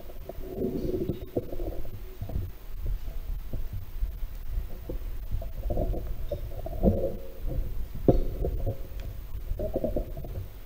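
Low, irregular rumbling and soft thumps picked up by the altar microphone, with a few sharp clicks; no clear speech or singing.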